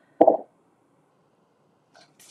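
A brief mouth sound from a woman: a small pop followed by a short low murmur, about a quarter second in.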